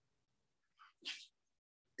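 Near silence, broken about a second in by one short breath noise close to the microphone, like a sniff or quick intake of breath.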